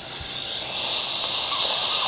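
A loud, steady, high-pitched hiss that starts abruptly.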